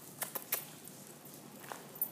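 Dogs' claws clicking on a hard floor: a few sharp taps in the first half second, then one faint tap near the end, over a low room hum.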